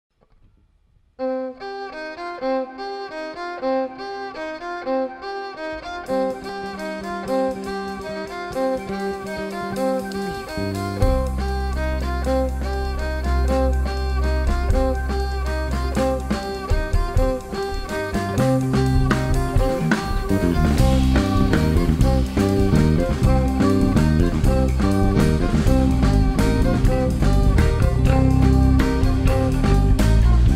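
Live jazz-fusion quartet music. Violin and electric guitar open quietly with a repeating figure about a second in. A low bass-guitar line enters around ten seconds in, then drums join and the band grows louder from about eighteen seconds on.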